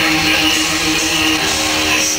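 Black metal band playing live: electric guitars and drums, loud and continuous, heard from within the audience.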